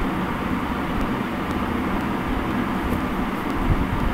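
Steady background noise, a low rumble with hiss, with a couple of faint clicks near the end.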